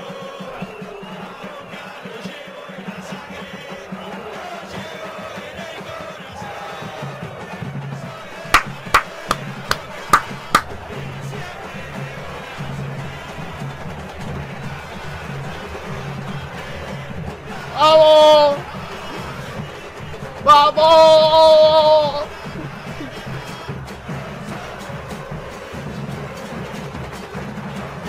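Football supporters' band of bass drums (bombos) and brass playing among a chanting stadium crowd: a steady drum beat under the singing, a handful of sharp bangs about nine to ten seconds in, and two loud held brass horn notes at about eighteen and twenty-one seconds in.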